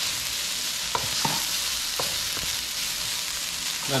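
Grated ginger and garlic sizzling in hot oil in a nonstick wok: a steady, even hiss as they are stirred with a wooden spoon, with a few faint knocks of the spoon about one and two seconds in.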